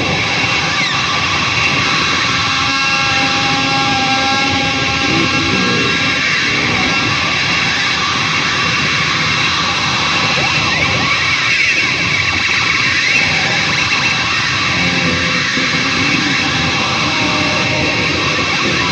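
Toy laser gun held against an EVH Wolfgang Special electric guitar's strings and pickups, its sounds picked up and played through the amplifier as a loud, steady roar of noise with wavering, sliding tones and a few held tones a few seconds in.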